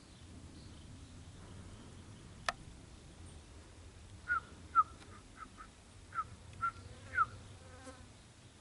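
A single sharp click about two and a half seconds in, then a run of short chirping calls, several falling in pitch, scattered over about three seconds. A low steady hum lies underneath.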